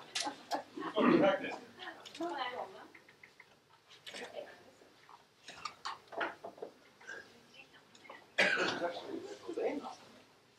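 Indistinct, low talk between a few people in a room, broken by short clicks and knocks of handling. The talk grows louder for a moment about eight and a half seconds in.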